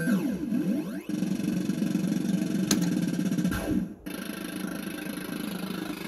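Action Note fruit machine playing its electronic sound effects: crossing rising and falling sweeps near the start, a sharp click a little under three seconds in, a falling sweep and a brief dip about four seconds in, then steadier electronic tones as the reels spin.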